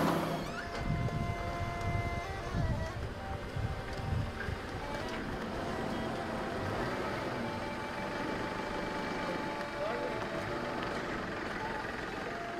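A hand-pushed cargo tricycle loaded with plastic bottles rolling over asphalt, with low, irregular rumbling and knocking that is strongest in the first few seconds. Under it runs soft background music of sustained notes.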